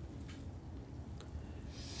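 Quiet room tone: a steady low hum with a couple of faint clicks.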